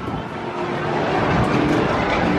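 Steady low rumble and hiss inside a moving Ferris wheel gondola as it climbs, growing a little louder about half a second in.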